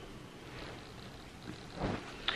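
Quiet room tone: a steady low hiss, with one short, soft sound near the end.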